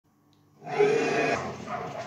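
Animated-film dinosaur roaring, heard through a TV's speaker: a short, loud roar starting about half a second in and easing off after under a second into a quieter growl.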